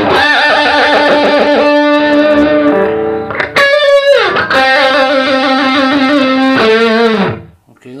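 Electric guitar played through a HeadRush pedalboard's SL-100 Drive amp model (modelled on a Soldano SLO-100), a distorted high-gain lead: sustained notes with wide vibrato, a quick pitch slide about halfway through, then a long held vibrato note that cuts off near the end.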